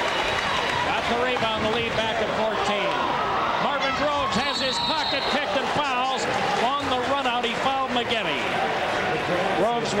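Gymnasium game noise at a basketball game: a crowd of voices shouting and cheering, with sneakers squeaking on the hardwood court and the ball bouncing.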